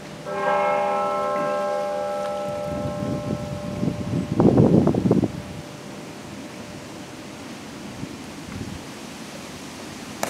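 A bell struck once, its several pitches ringing together and dying away over about two seconds, over the fading hum of the stroke before. About four seconds in, a louder rush of rustling noise follows.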